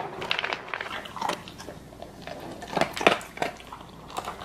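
A large dog eating dry kibble from a plastic slow-feeder bowl: irregular crunching, densest about three seconds in.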